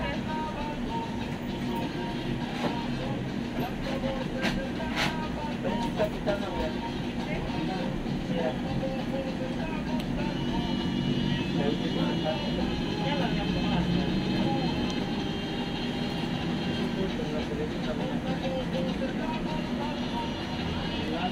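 Busy shop background: indistinct voices over a steady low hum, with some music, and two sharp clicks about five seconds in.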